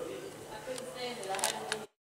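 Indistinct talk in a room with a few sharp clicks, cut off abruptly near the end.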